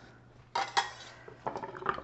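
Chef's knife scraping chopped green onion off an olive-wood cutting board into a bowl, with a few sharp clicks and taps of the blade against board and bowl: a couple about half a second in, then a quick run of lighter ones in the second half.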